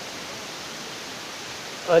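Steady hiss of background room noise in a pause of a group recitation; chanting voices start up just at the end.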